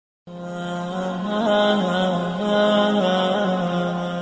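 Wordless chanted vocal intro: a voice holding a long low drone-like note with small melodic turns and ornaments, no words or beat.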